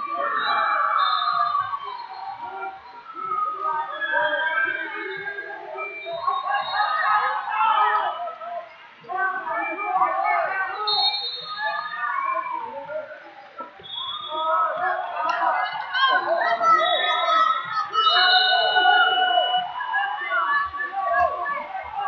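Many overlapping voices in a large hall: spectators and coaches shouting and chattering around a wrestling bout, with no single voice clear.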